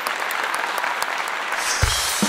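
Studio audience and judges applauding, a steady patter of many hands clapping. Low thumps of music start near the end.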